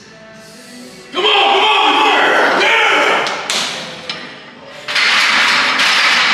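Men shouting loudly through a heavy barbell back squat, starting about a second in, with one sharp thud about halfway through and a second loud burst of shouting near the end.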